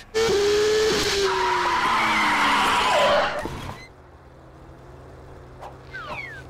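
Formula One racing car sound effect: a loud engine note falling steadily in pitch over about three seconds, mixed with tyre skid noise, then dropping away to a low steady hum for the last couple of seconds.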